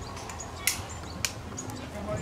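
Two sharp clicks about half a second apart over a low, steady hiss.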